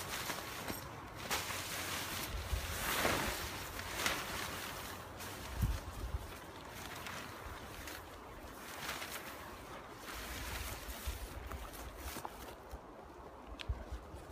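Wind gusting on the microphone, with intermittent swishing and rustling as tent fabric is handled and the shelter's corners are staked out.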